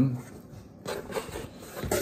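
Cardboard boxes being handled: a short scraping rustle about a second in as a smaller box is slid out of an opened shipping carton.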